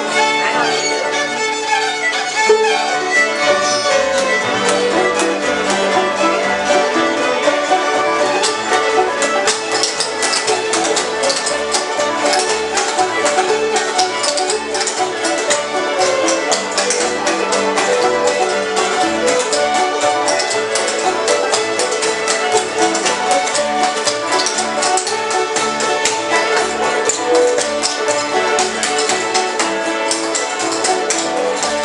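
Old-time string band jam: fiddles and acoustic guitars playing a tune together, with an upright bass plucked close by, its low notes keeping a steady beat from about four seconds in.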